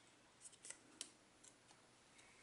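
Near silence, with a few faint ticks as a paper butterfly is handled and pressed down onto foam dimensional adhesive.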